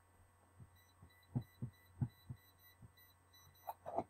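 Soft, irregular thumps and knocks of toys and objects being shifted about while someone rummages through a container for a toy, with a sharper knock near the end. A faint, evenly repeating high electronic beeping sounds behind them through the middle.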